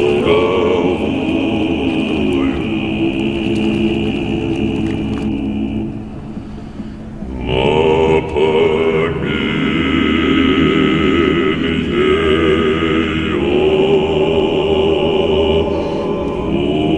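Background music: a choir singing a slow Russian folk song in long held notes with vibrato. It thins out briefly about six seconds in and swells back about a second and a half later.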